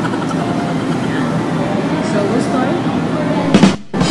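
Quiet conversation over steady fast-food restaurant background noise. Near the end a short loud burst, then the sound cuts out for a moment.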